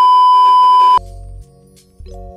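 A loud, steady, high test-tone beep, the tone that goes with TV colour bars, held for about a second and then cut off abruptly. Soft music with sustained chords over a bass follows.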